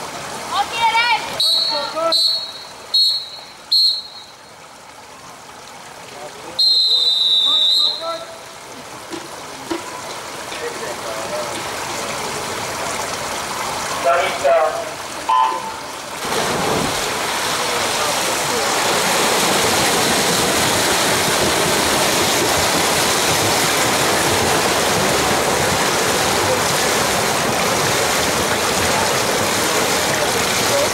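A referee's whistle gives four short blasts and then one long blast, calling the swimmers onto the starting blocks. A brief starter's command and start signal follow, and then the loud, steady churning splash of a freestyle sprint field fills the rest.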